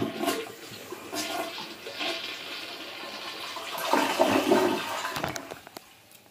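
Toilet flushing: a rush of water that swells about four seconds in and tapers off near the end.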